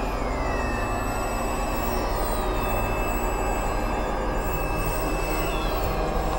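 Several music tracks playing over one another at once, merging into a dense, steady wash of noisy drone, with a few short falling glides on top.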